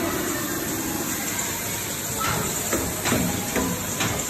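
Steady hiss of water jets spraying from several mounted fire-hose nozzles, with faint children's voices from about halfway through.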